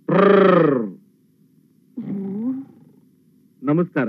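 A person's voice: a loud drawn-out vocal cry that rises and then falls in pitch, a shorter voiced sound about two seconds in, and a run of short choppy bursts starting near the end.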